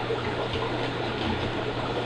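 Steady running, trickling water from the aquariums' water movement, over a low steady hum.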